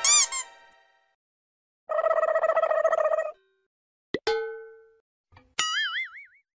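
A run of cartoon sound effects: two quick springy boings at the start, a buzzing pitched tone for over a second about two seconds in, a click followed by a fading ding about four seconds in, and a wobbling whistle-like glide near the end.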